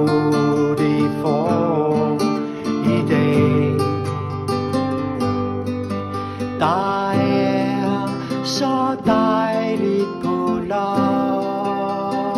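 Acoustic guitar strummed through an instrumental passage of a song, with long held melody notes over the chords and no singing.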